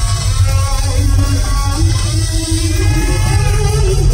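Live rock band playing loudly, led by an electric guitar soloing with sustained, bending notes over a heavy bass-and-drums low end; in the second half one held guitar note steps upward in pitch.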